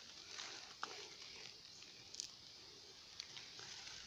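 Faint rustling with a few soft clicks: a freshly dug wild yam tuber, its hairy roots caked with soil, being handled over loose earth and dry leaves.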